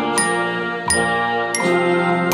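Student bell kit (a metal-bar glockenspiel sold as a beginner's "xylophone") played with two mallets: three ringing notes of a slow melody in B-flat, struck about three-quarters of a second apart.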